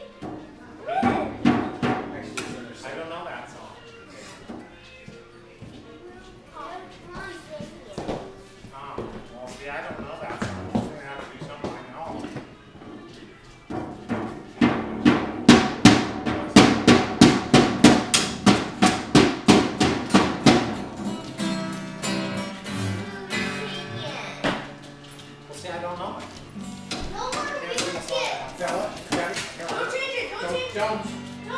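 A child playing a First Act junior drum kit along with an acoustic guitar and voices. About halfway through comes a run of fast, even drum strikes, about three a second for some seven seconds, the loudest part.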